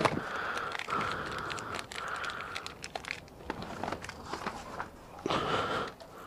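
Rustling and crinkling of clothing and a bag being handled close to the microphone, with scattered small clicks.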